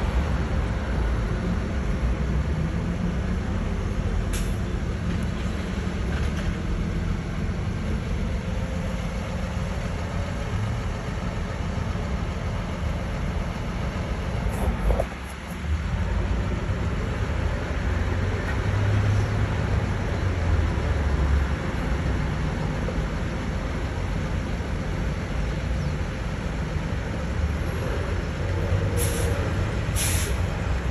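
Busy city street traffic: a steady rumble of car, truck and bus engines and tyres on the road below.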